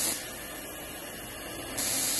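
A 12-volt DC Tesla coil running, its discharge hissing steadily. The hiss grows louder and sharper twice, right at the start and again near the end, as sparks jump from the coil's metal sphere to a glass bulb held against it.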